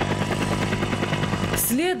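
Helicopter running in flight: a fast, even rotor chop over a steady low engine drone. A voice comes in near the end.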